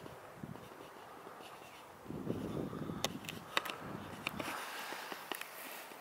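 Faint open-air field ambience: a soft steady hiss with a low rumble about two seconds in and a run of sharp clicks around the middle.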